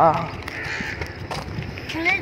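A short spoken "haan" at the start, then the sounds of walking outdoors: a low rumble of wind on a phone microphone and a couple of soft footfalls on a dirt track.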